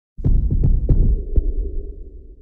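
Muffled, bass-heavy thumping of music over a venue's sound system, with a few sharp clicks, fading near the end.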